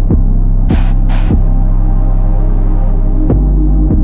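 Trap instrumental beat: a loud, sustained 808 bass with kick drums that drop in pitch, two sharp noisy hits about a second in, and the bass moving to a lower, stronger note near the end.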